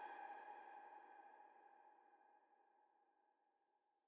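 The last held synth chord of a hardstyle track fades out and dies away by about three and a half seconds in.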